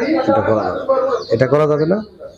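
A large brood of deshi (native) chicken chicks peeping, a steady scatter of high little chirps, under a man's talking voice.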